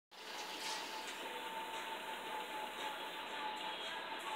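Faint, steady background noise with a thin steady hum and no distinct events.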